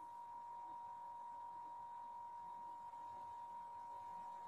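Near silence: faint hiss with a thin, steady high-pitched tone held unchanged throughout.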